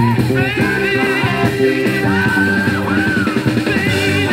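Uptempo northern soul record playing from a 7-inch vinyl single on a turntable, with a steady beat, bass and a wavering, held high melody line.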